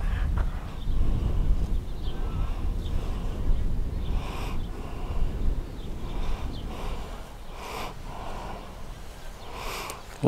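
Low rumble of wind buffeting the microphone outdoors, easing slightly over the stretch, with about three faint brief sounds scattered through it.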